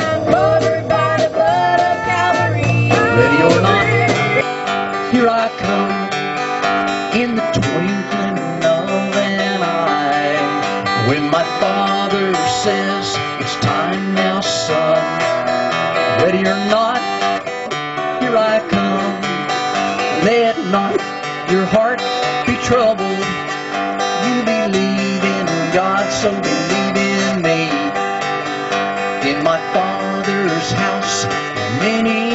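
A sung note with vibrato ends about four seconds in. Then a steel-string acoustic guitar plays solo, picked and strummed in a country style, with no singing.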